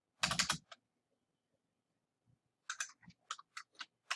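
Computer keyboard keystrokes: a quick burst of several clicks just after the start, a pause, then about half a dozen separate clicks in the second half.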